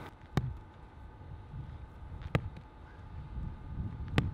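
Faint outdoor ambience with a low rumble of distant traffic, broken by two sharp clicks about two seconds apart.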